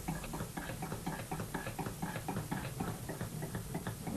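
Rapid, fairly even clicking crackle, several small clicks a second, as a pointed tool works under a bird's skin to lift it from the carcass.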